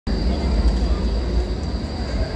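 Low rumble of a low-floor electric tram approaching on street rails, with people's voices in the background.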